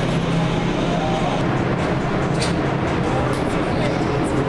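A powder-coat curing oven's burner and circulation fan running as a steady rushing noise with a low hum, with a few light clicks midway.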